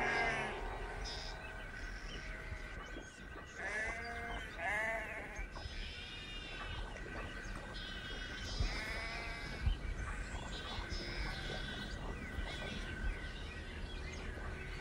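A flock of sheep bleating: separate calls with pauses between them, the clearest about four, six and nine seconds in, over a faint steady high tone.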